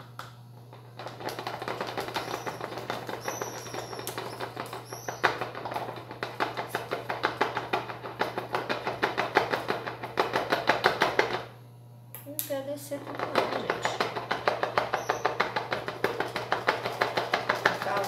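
Rapid, repeated tapping on a plastic funnel in a bottle neck, several taps a second, in two long runs with a short pause about two-thirds of the way through: knocking down baking soda that has clogged the funnel.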